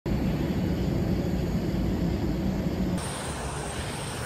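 Steady noise of jet airliners on an airport apron, heaviest in the low end. About three seconds in it changes abruptly to a slightly quieter, thinner version of the same noise.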